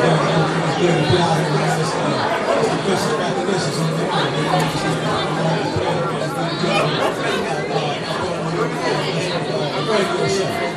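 Several people talking over one another at once, a busy overlapping chatter of voices with no single clear speaker.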